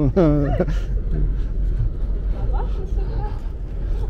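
A voice speaks briefly at the start, then a steady low rumble carries on under faint voices of the people walking.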